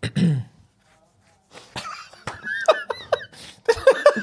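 A man laughing. There is a short burst at once, then about a second of quiet, then stifled, breathy laughter in broken, high-pitched snatches that builds toward the end.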